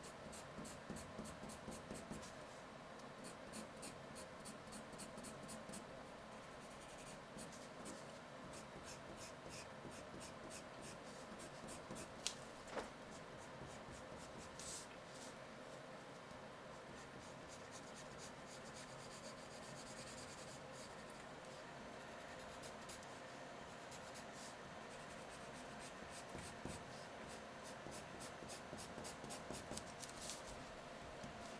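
Colored pencil scratching across paper in quick, repeated shading strokes, faint and continuous. Two sharp ticks come about twelve seconds in.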